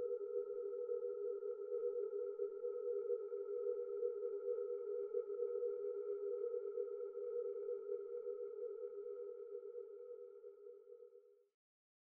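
Sustained electronic drone of several steady held tones, the lowest and loudest in the middle register, fading out slowly and ending near the end.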